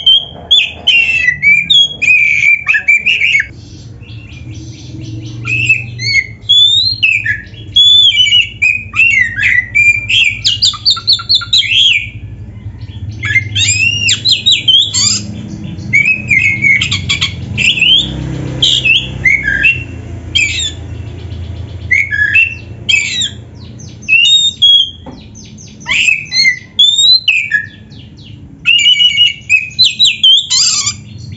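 Oriental magpie-robin of the black-bellied form singing hard: a long run of loud, quickly changing whistled and harsh phrases, broken by short pauses, with mimicked calls of other birds worked into the song. A faint steady low hum runs underneath.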